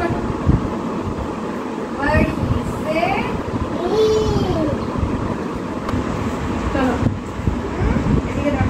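High-pitched voices of a woman and a toddler saying a few drawn-out, sing-song syllables, over a steady low background rumble.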